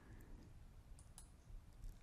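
Near silence, with a faint computer mouse click about a second in.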